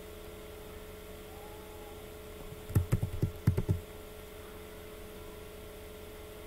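A quick run of about eight keystrokes on a computer keyboard lasting about a second, about three seconds in, over a steady electrical hum.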